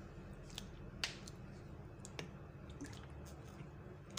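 A few faint, sharp clicks and taps of small things being handled, the clearest about a second in, over a low steady hum.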